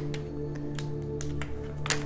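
Background music holding a steady low chord, with a few light clicks and a sharper click near the end from tarot cards being handled.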